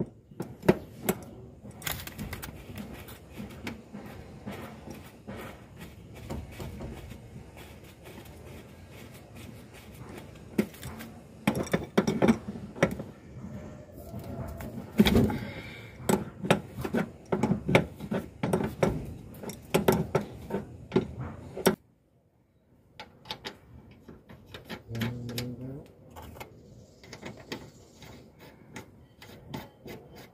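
A wrench working the flare nuts on the service valves of a split-type air conditioner's outdoor unit: a run of irregular metallic clicks, clinks and knocks as the nuts are loosened. The sound cuts out for about a second about two-thirds of the way through, then sparser clicks follow.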